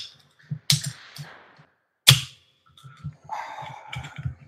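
Aluminium soda can being cracked open: two sharp pops of the tab, the second the loudest, followed by a softer fizzing hiss near the end.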